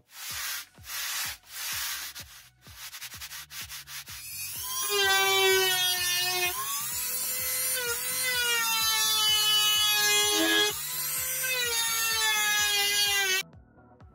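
A few rough sanding strokes on wood, then a handheld rotary tool running at high speed as it grinds the arrow groove into the wooden crossbow stock. Its high whine dips and recovers in pitch as the bit takes load, and it cuts off suddenly near the end.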